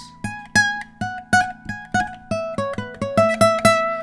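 Dowina hybrid nylon-string guitar, spruce-topped, played high up the neck: a run of about a dozen single plucked notes that step down in pitch, each note ringing on with long sustain, the last one held.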